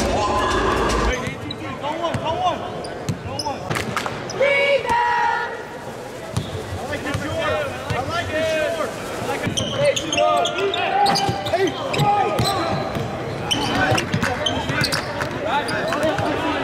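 A basketball bouncing on a hardwood court, with sneakers squeaking and voices echoing in a large arena.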